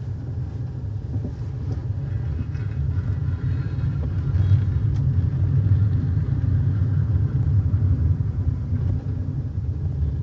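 Low, steady rumble of a vehicle driving along a street, growing a little louder as it goes.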